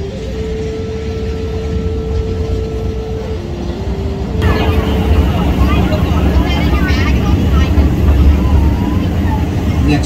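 Open-car zoo mini train running with a steady low rumble, a steady held tone over it for the first few seconds that dips briefly in pitch before stopping. From about halfway through, passengers' voices chatter over the train noise.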